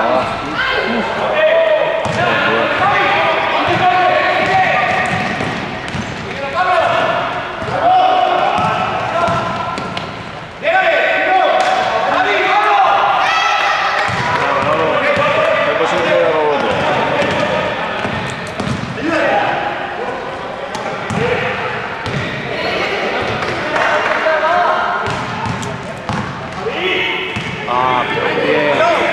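Basketball game in a sports hall: players and coaches calling out, with the ball bouncing on the court. There is an abrupt jump in level about ten seconds in.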